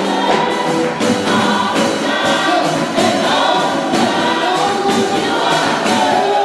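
Gospel choir singing into microphones with band accompaniment and a steady beat.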